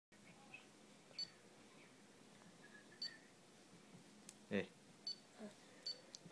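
Faint room tone broken by four short, high electronic beep-clicks, spaced irregularly. A voice says "hey" near the end.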